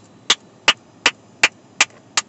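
A person clapping their hands in a steady rhythm, nearly three sharp claps a second.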